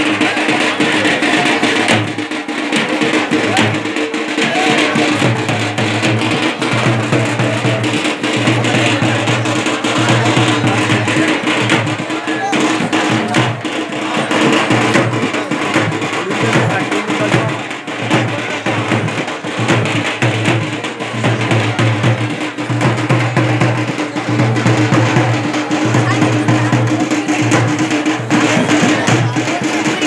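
Procession drums beating continuously in a dense rhythm, with the voices of a crowd underneath.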